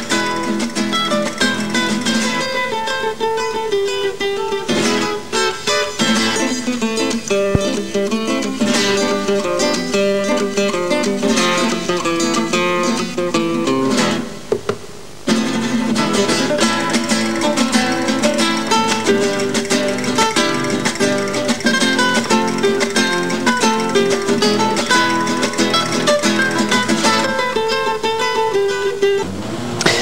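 Background music played on acoustic guitar, plucked notes running on steadily, with a short break about halfway through.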